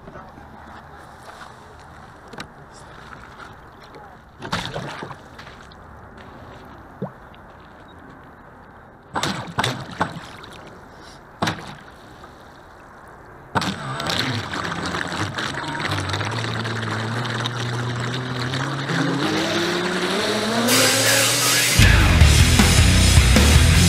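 Several sharp knocks and bumps on the hull of an RC catamaran, then its twin brushless motors spin up: a whine that climbs in pitch as the throttle comes up, over water noise that grows steadily louder toward the end.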